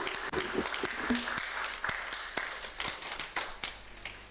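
Audience applause dying away, thinning from steady clapping to a few scattered single claps near the end.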